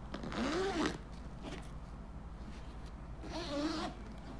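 Zip on the front pocket of a Hugo Boss cow-leather laptop bag being pulled, in two short zips. One comes about a second in and the other near the end, each about half a second long with a pitch that sweeps up and back down.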